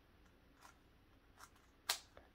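Layers of a GAN 356 M magnetic 3x3 speedcube clicking faintly as they are turned, a few soft clicks and one sharper click near the end.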